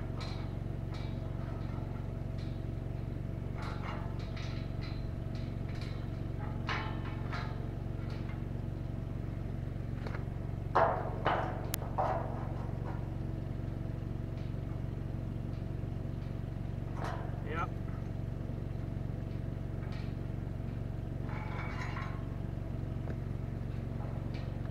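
An engine running steadily, a low even drone, with a few short sharp knocks of metal work on a steel gate; the loudest are three close together about eleven seconds in.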